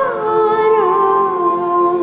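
A woman's voice singing a slow, wordless melody in long held notes, sliding down in pitch over the first second and then holding steady.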